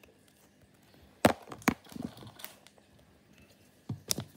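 Handling noise from trading cards and hands on a tabletop: a sharp knock a little over a second in, a few smaller knocks and clicks after it, and another knock near the end.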